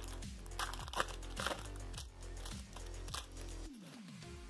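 A 2021 Bowman baseball card pack's wrapper being torn open and crinkled, several short crisp crinkles, over steady background music.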